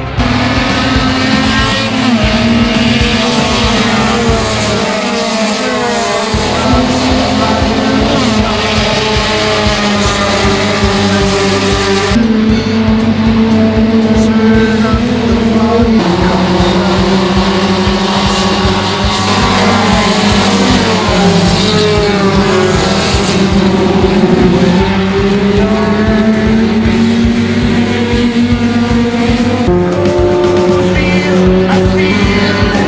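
Small hatchback touring race cars' engines running hard on the circuit, their pitch rising and falling through the gears, with music underneath. The sound changes abruptly twice, about twelve and sixteen seconds in.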